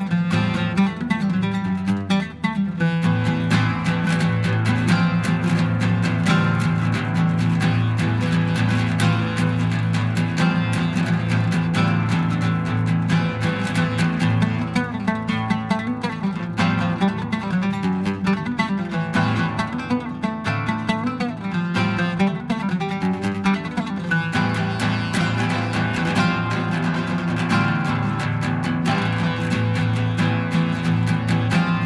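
Solo oud played fast: rapid plucked runs of notes with low strings ringing steadily underneath.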